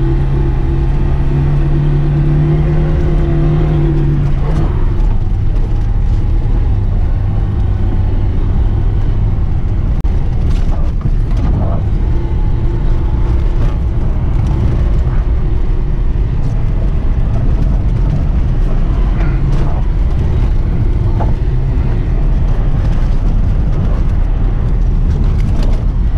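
Lada Zhiguli's inline-four engine running under load, heard from inside the car over constant road rumble. About four and a half seconds in, the engine note drops to a lower pitch. A few knocks come through from the rough, potholed track surface.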